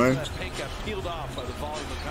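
Basketball being dribbled on an arena's hardwood court, heard through a TV broadcast under the commentator's voice and crowd noise.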